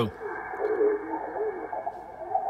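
Single-sideband voice on the 40-metre band from a Yaesu FTdx5000MP transceiver's speaker: a station's speech, thin and narrow, over a steady band hiss. Garbled interference from another station about 2 kHz away is mixed in.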